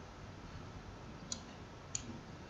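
Two faint computer mouse clicks, about half a second apart, over low room hiss.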